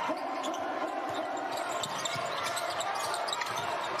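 Basketball being dribbled on a hardwood court, its bounces heard over a steady arena crowd murmur.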